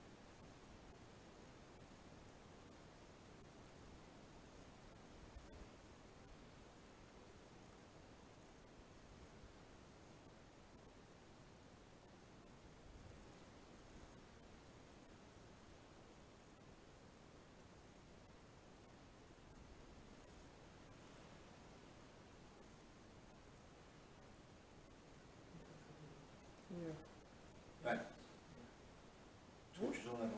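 Near silence with a faint, steady, high-pitched trill of insects throughout. Near the end there is a brief low murmur of a voice and a single sharp knock.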